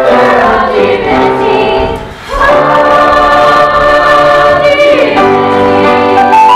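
A mixed chorus of young student voices singing operetta. About two seconds in the singing drops briefly, then the chorus holds one long chord until near the end, when the notes change.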